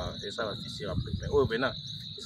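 A steady high-pitched insect trill runs without a break, under people talking close by.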